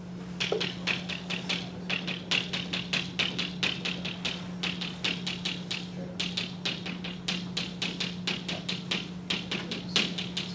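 Chalk tapping and clicking against a blackboard while writing fractions, several sharp taps a second in an uneven rhythm, over a steady low hum.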